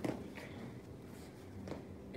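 Quiet room tone with a couple of faint soft taps from students' feet setting down on foam floor mats after front kicks.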